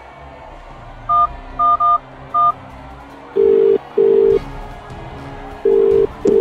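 Telephone touch-tone dialing: four quick two-tone keypad beeps, then the ringing tone on the line in pairs of short rings.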